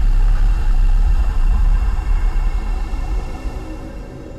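A loud deep rumble that slowly fades out over the second half.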